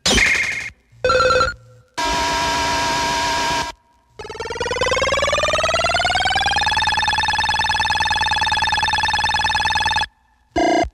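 A run of short sampled sounds from a turntablist battle record: three brief bursts separated by short silences, then a buzzy electronic tone that rises in pitch for about two and a half seconds and then holds steady.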